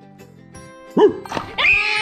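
A child's sudden shriek about a second in, then a long, steady, high-pitched scream-laugh as the toy squirts water at him, over quiet background music.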